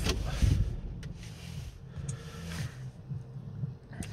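Car cabin with the diesel engine just switched off: a faint, irregular low rumble and a few soft rustles.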